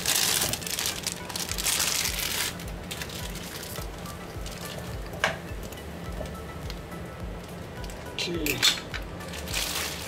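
Water boiling in a pan with instant noodle blocks in it. A plastic noodle packet crinkles in the first two and a half seconds, then only the steady bubbling goes on under background music.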